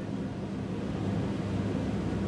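A steady, low-pitched hum and rumble that holds even throughout, with no distinct events.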